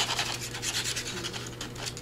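Plastic tip of a white-glue bottle scraping and rubbing over paper as glue is spread on a vellum panel: a quick run of fine scratches.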